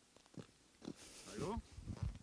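Mostly quiet, with a man briefly saying "Hallo" in a short, gliding voice about two-thirds of the way in.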